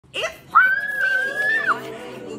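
A young woman's high-pitched excited squeal, held for about a second and rising slightly before it breaks off, over background music.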